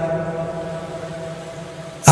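The preacher's last sung note lingers through the public-address system as a steady tone that slowly fades away, an echo or reverb tail.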